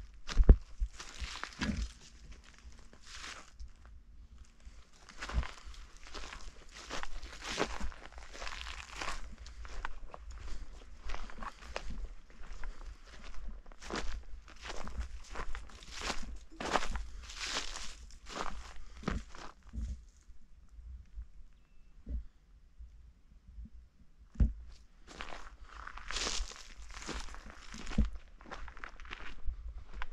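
Footsteps of a person walking on dry dirt, twigs and dead grass at a steady pace. The steps pause for a few seconds about two-thirds of the way through, then start again.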